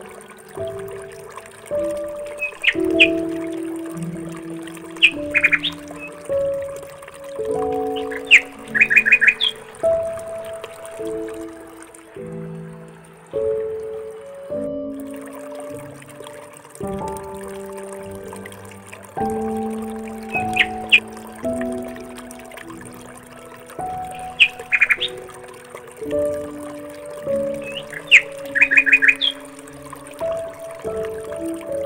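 Background instrumental music with short runs of high bird chirps every few seconds. The same chirp pattern comes round again after about twenty seconds, as in a looped nature-music track.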